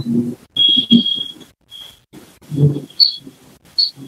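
A steady high-pitched electronic beep lasting about a second, followed by a shorter beep, with brief low vocal sounds around them.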